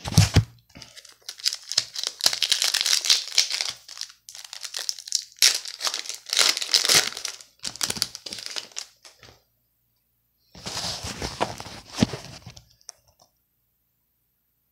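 A Topps Chrome baseball card pack's foil wrapper being torn open and crinkled by hand in irregular rustling bursts, with a pause of about a second before a last burst. A knock of the phone being picked up comes at the very start.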